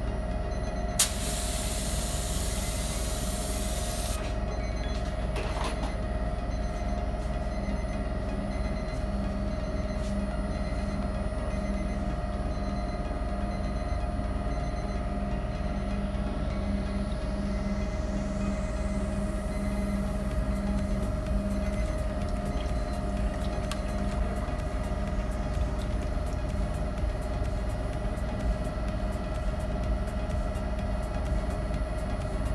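An activator spray gun hissing for about three seconds as it sprays the floating water-transfer printing film, over a steady low machine drone that runs on throughout.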